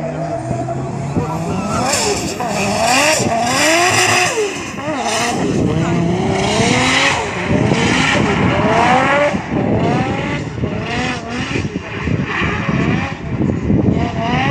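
A drift car's engine revving hard, its pitch rising and falling again and again as the throttle is worked, with tyre squeal from the rear tyres sliding and smoking.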